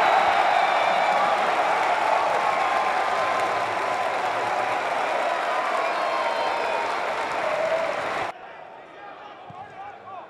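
Football stadium crowd cheering and shouting after a goal, loudest at first and easing slightly, then cut off suddenly about eight seconds in, leaving much quieter crowd noise.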